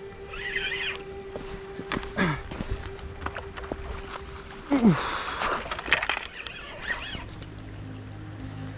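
Water splashing in short bursts as a hooked carp thrashes near the bank, with a spinning reel being wound. The loudest splash comes about five seconds in.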